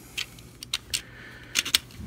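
Hard plastic parts of a robot action figure clicking and knocking together as an armor boot is handled and lined up over the figure's leg: a string of small sharp clicks, several bunched together near the end.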